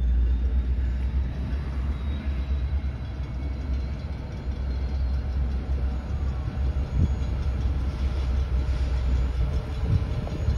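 Low, steady rumble of a short BNSF freight train's diesel locomotives moving off beyond a grade crossing, mixed with passing street traffic. A brief knock about seven seconds in.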